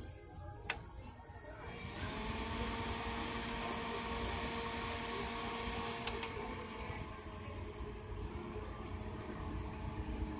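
Tatung Heat Devil ceramic space heater switched on with a knob click, its fan spinning up to a steady whir with a light hum. About six seconds in the knob clicks again, and the humming tones fade soon after while the fan keeps running.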